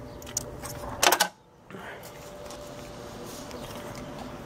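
A faint steady hum with a few light clicks. Just after a second in there is a short loud clatter that breaks off into a brief dropout, then the hum returns.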